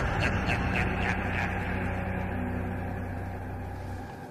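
A low, steady droning hum that slowly fades out, with a few faint clicks in the first second and a half.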